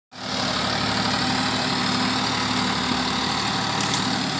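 Ford 3610 tractor's three-cylinder diesel engine running at a steady, even speed.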